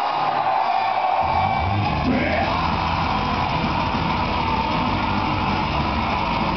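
Live pagan metal band playing loud, with distorted guitars and shouted vocals; the bass and drums come in hard about a second in and the full band drives on from there.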